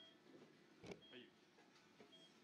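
Near silence in an operating room: a faint, short, high beep about once a second, typical of an anaesthesia monitor's pulse tone, with faint voices and a click about a second in.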